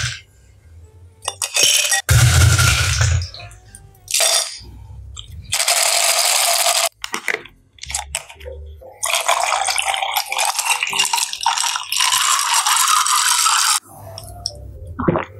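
Ice cubes clattering as they are dropped with tongs into a glass in the first few seconds. Then a plastic water bottle is twisted open and water is poured over the ice for several seconds near the end.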